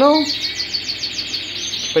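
Domestic canary singing a fast trill of short falling notes, about eight a second, then a few higher held notes near the end, with more birdsong going on underneath.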